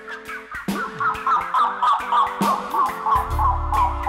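Live band playing an instrumental passage: drum kit, bass notes and a fast, repeating warbling electronic figure, with a deep bass note sounding for the last second or so.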